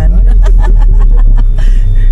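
Steady low rumble inside a stopped car's cabin, with a quick run of short ticks over it in the first second and a half.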